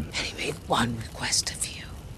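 Speech only: quiet dialogue, a character talking in a low voice.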